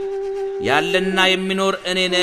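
A steady drone note holds throughout. About half a second in, a voice chants over it, sliding up in pitch into long held notes.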